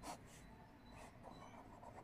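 Faint scratching of a pen drawing short strokes on paper.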